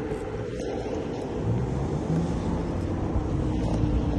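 Steady low rumble and wind noise while riding a Lime electric scooter along a road: wheels rolling on asphalt, with air rushing over the microphone.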